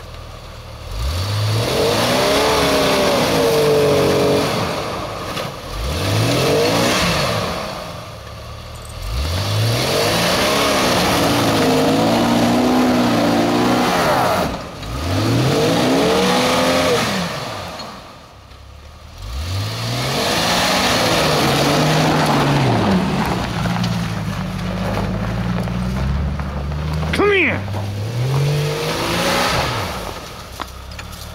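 Jeep Cherokee engine revving hard again and again as it drives into and up a snowbank, its tyres churning in the snow. There are about five separate surges in revs that each rise and drop back, then a longer spell of high, uneven revs near the end.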